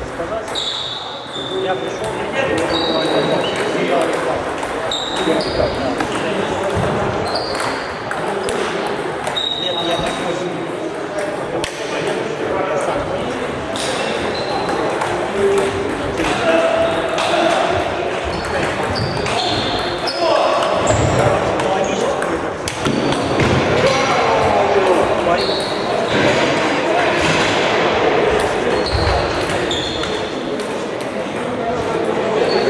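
Table tennis balls clicking against bats and tables across a hall with many games in play, over a murmur of indistinct voices echoing in the large room. Short high-pitched squeaks come and go among the clicks.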